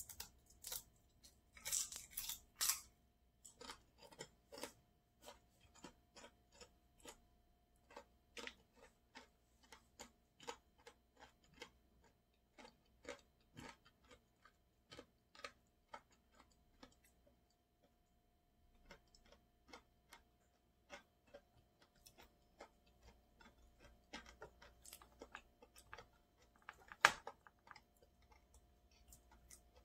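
A person chewing food close to the microphone: a run of small mouth clicks about two a second, with a few louder, crunchier bites in the first three seconds and a short break past the middle. One sharper snap near the end is the loudest sound.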